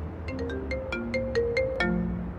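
A phone ringtone playing a quick melody of about eight bright, chiming notes, over a low steady hum.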